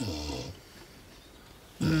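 A dog gives a short, low whine that falls in pitch at the start. A woman's "mmm" comes near the end.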